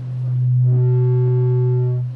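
A loud, steady low-pitched electronic tone from the sound system. It swells up over the first half second and holds at one pitch, fainter higher tones join about a third of the way in, and it drops away right at the end.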